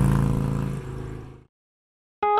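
Tail of an edited title-transition sound effect: a low, steady humming tone that fades away and stops about one and a half seconds in.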